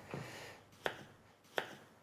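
A knife cutting raw potatoes into wedges on a wooden chopping board, the blade striking the board in two sharp knocks, the first about a second in.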